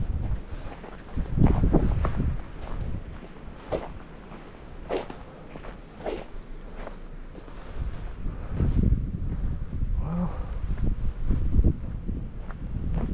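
Footsteps in snow, roughly one step a second, over a low rumble of wind on the microphone that grows stronger in the second half.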